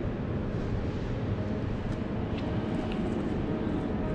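Steady low rumble of room noise inside a large marble-clad monument interior, with a couple of faint clicks about two seconds in.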